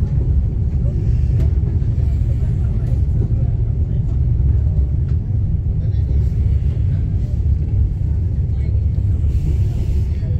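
KTM Tebrau Shuttle train running at speed, heard from inside the carriage: a steady, loud low rumble from the train in motion.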